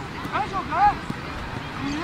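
A quick run of four or five short, high-pitched shouts, each rising and falling in pitch, in the first second, over steady outdoor background noise from people around a football pitch.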